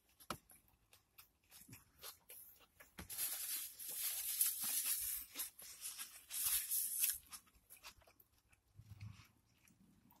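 Close-up chewing and lip smacks from someone eating a burger, with small scattered clicks. From about three seconds in, a paper napkin rustles against the mouth for several seconds.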